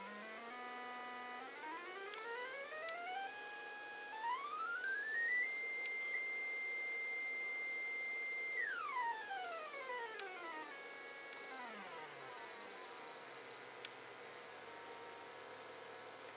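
Buzzy electronic tone from an Arduino Nano putting out square waves at note frequencies. It climbs in small steps from a low buzz to a high whine over about five seconds, holds steady for about three seconds, then steps back down to a low pitch. A faint steady hum runs underneath.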